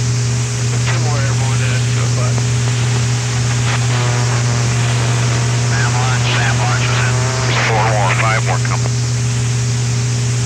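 Wartime B-52 cockpit recording: a loud, steady low hum and hiss from the intercom and radio. Faint, garbled radio voice calls come through it several times, among them a Navy "Red Crown" controller warning of a SAM launch.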